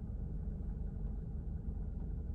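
Steady low rumble inside a car cabin, typical of the car idling.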